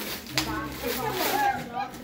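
Wrapping paper tearing and rustling as a present is unwrapped, with a sharp rip about a third of a second in, under children's voices chattering.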